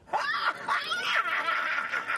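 A woman laughing and shrieking with overwhelmed delight, her voice rising into a long held high squeal in the second half.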